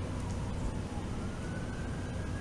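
Steady low rumble of distant traffic with a faint thin whine slowly rising in pitch through it.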